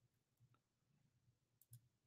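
Near silence: room tone with a few faint, short clicks, one about half a second in and two close together near the end.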